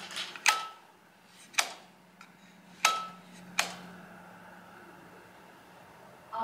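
Wall light switch flicked on and off, four sharp clicks a second or so apart, two of them with a short ring after them.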